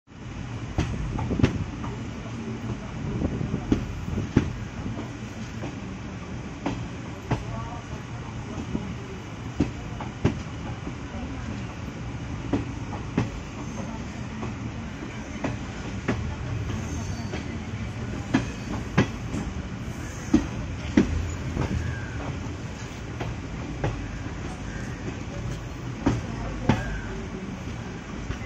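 Indian Railways passenger coach rolling slowly, heard from its open doorway: a steady low rumble with sharp wheel clicks over the rail joints at irregular spacing, roughly one a second.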